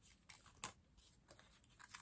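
Faint rustling and light taps of cardstock being handled, lined up and pressed down by hand, with one sharper tap a little over half a second in.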